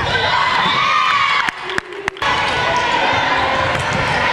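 Volleyball play in a gymnasium: players and spectators shouting and cheering over one another, with a few sharp ball hits. The voices briefly drop away about halfway through, then pick up again.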